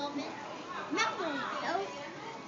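Indistinct children's voices with gliding pitch, loudest about a second in, over room background noise.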